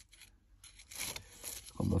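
Faint small clicks and rustling of fingers working a small disassembled axle breather valve, picking at its check-valve spring; a man starts speaking near the end.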